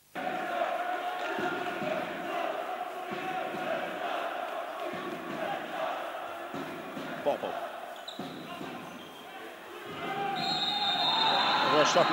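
Live handball game sound in an indoor sports hall: the ball bouncing on the court with shouts from players and a small crowd. A steady high tone sounds near the end.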